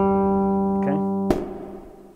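Electric bass guitar tapped harmonic at the twelfth fret of the G string: a single octave G with a bright, chiming ring, sustaining steadily. Just over a second in, a click stops the note and its ring fades away.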